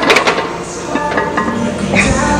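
Loaded barbell being set back into the power rack's hooks: a quick cluster of metal clanks at the start, then quieter.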